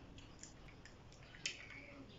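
A few faint plastic clicks and scratches from a small sealed jelly cup being pried at with teeth and fingers, the sharpest click about one and a half seconds in; the lid's seal does not give.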